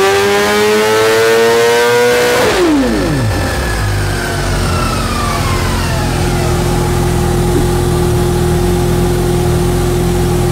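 BMW S1000RR inline-four engine on a chassis dyno in fifth gear, revving up under full load on a baseline pull. About two and a half seconds in the throttle is shut: the revs drop sharply, and the engine settles to a low, steady run while a falling whine fades as the rig spins down.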